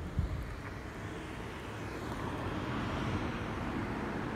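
Steady low outdoor rumble with wind buffeting the microphone, a brief bump just after the start, and a broader rushing noise that swells through the second half.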